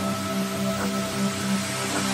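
Electronic music: sustained synth chords over a pulsing low synth, with a steady wash of noise.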